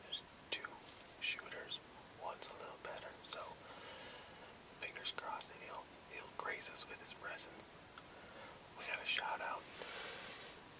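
A man whispering close to the microphone, in short phrases with brief pauses between them.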